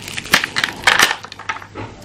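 Clear plastic packaging tray of an acrylic chess set crackling as it is handled, with several sharp clicks.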